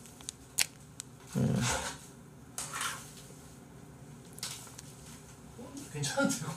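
A small plastic condiment sachet being torn open with the teeth: a few faint clicks and crinkles, then short rips, the loudest about a second and a half in.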